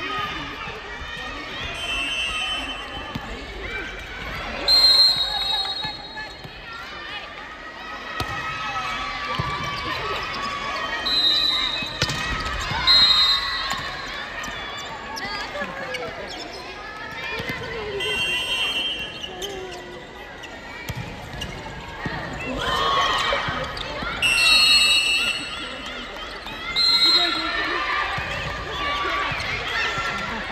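Volleyball being played on a wooden gym floor: athletic shoes give short, high-pitched squeaks about eight times, and the ball bounces and is struck, under players' calls and chatter in a large sports hall.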